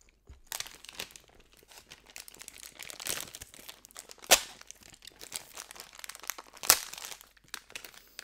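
A plastic sausage wrapper crinkling close to the microphone as it is handled and torn open, with two sharp snaps, one about four seconds in and one near seven seconds.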